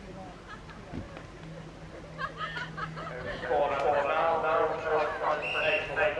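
People talking close to the microphone, louder from about three and a half seconds in, over a faint steady low hum.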